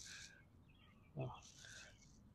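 Nearly quiet faint outdoor background, with one short spoken "oh" a little past the middle.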